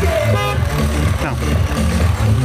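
A brief car-horn toot about half a second in, from the BMW iX's horn pressed on the steering-wheel hub, over loud music with a heavy bass beat.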